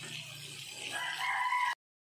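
Breaded chicken deep-frying in oil, a steady sizzling hiss; about a second in, a high, held call sounds over it for under a second. Then the sound cuts out abruptly just before the end.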